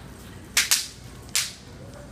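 Bang snaps (snap-pop novelty fireworks) going off as three sharp cracks: two in quick succession about half a second in, then a third shortly before the middle of the second second.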